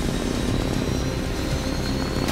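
Motorcycle engine sound effect for the Bat-cycle running at speed, a steady drone whose pitch climbs slowly.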